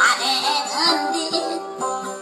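Maranao dayunday music: a voice sings a high line that slides and wavers, over a plucked string instrument repeating steady notes.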